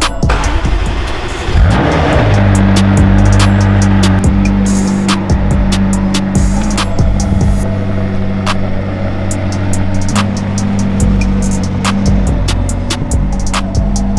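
Background music with a steady beat, over a sports car engine that revs up about two seconds in and then runs at a steady idle until near the end.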